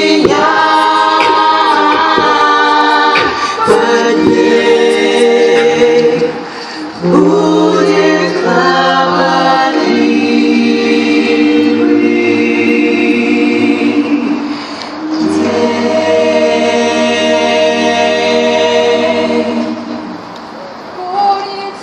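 Female a cappella choir singing through microphones: several voice parts in harmony, with long held chords over a low sustained note. The singing dips and breaks off briefly about seven seconds in, and again around fifteen seconds.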